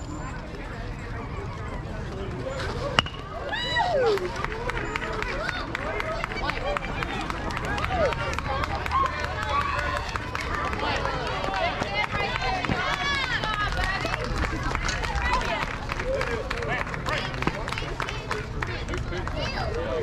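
A single sharp crack of a bat hitting the ball about three seconds in, then spectators shouting and cheering with many overlapping voices as the ball is put in play.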